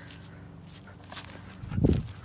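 Running footsteps on grass while a dog is chased, with a loud low thump and rumble near the end.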